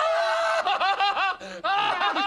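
Men laughing in choppy bursts from a film soundtrack, with a short break about one and a half seconds in.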